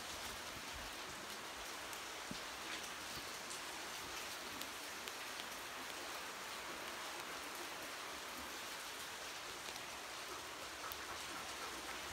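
Steady hiss of falling and running water, with scattered faint drops.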